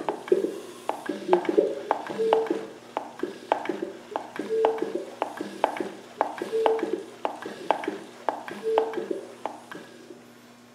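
Land Rover 300Tdi diesel engine being turned over slowly by hand with its timing belt exposed: a steady run of sharp clicks and knocks, a few a second, with a short mid-pitched tone about every two seconds. The knocking comes from the injection pump as it turns.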